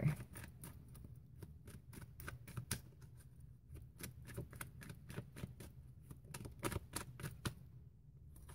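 A deck of tarot cards being shuffled overhand from hand to hand: a run of soft, irregular clicks and taps, several a second, as packets of cards drop and slap together. It stops shortly before the end.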